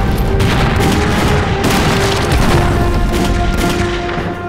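Several mortar shell explosions in quick succession, with dramatic music playing under them.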